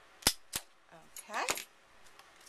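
Hand-held plier-style paper hole punch snapping shut through cardstock and springing open: two sharp clicks in quick succession. About a second later a brief rising tone and one more click.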